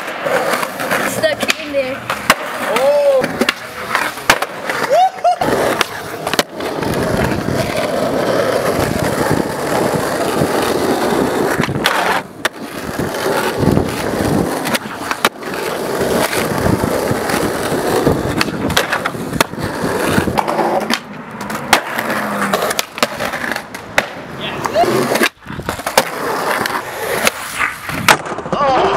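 Skateboard wheels rolling on concrete and asphalt, broken by many sharp clacks of the board's tail popping and the deck landing. Short shouts or voices come through in the first few seconds.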